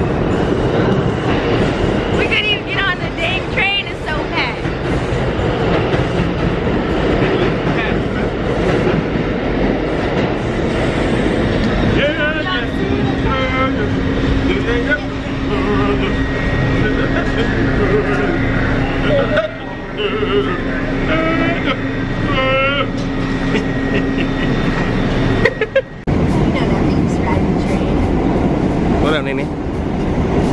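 New York City subway train running through a station, with a continuous rumbling clatter and voices of the crowd mixed in. A steady low hum sounds through the middle stretch, and the noise dips briefly twice.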